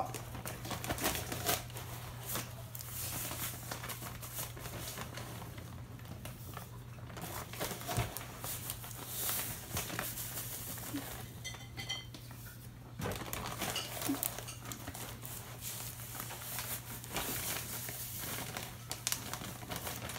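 Sugar bag crinkling and rustling while granulated sugar is scooped out with a measuring cup and poured into a stainless steel stockpot, with small clicks and scrapes throughout.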